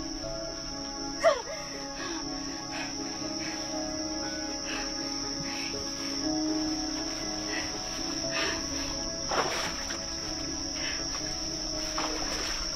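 Night forest ambience: a steady, high-pitched chorus of crickets under sustained low music notes. A few brief sharp sounds cut through it, the loudest about a second in and another near nine seconds.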